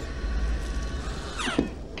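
Steady low rumble with a hiss from a movie soundtrack's spacecraft cabin during the final approach of a docking manoeuvre, with a short falling sweep near the end.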